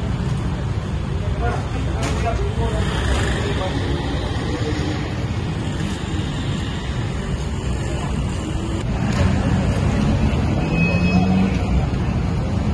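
Steady low rumble of road traffic with people talking indistinctly in the background.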